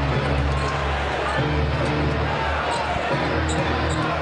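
Arena music playing sustained low bass notes, with a basketball being dribbled on the hardwood court.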